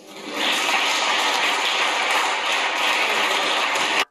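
Many people in a parliamentary chamber applauding: a dense, steady clatter of hands that swells up in the first half-second, following the end of a speech.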